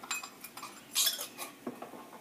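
Small kitchen clinks and knocks as spice containers are handled between additions to the pot, with one sharper clink about a second in.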